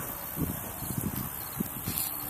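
Outdoor background: a low wind rumble on the microphone with faint scattered rustles and small ticks.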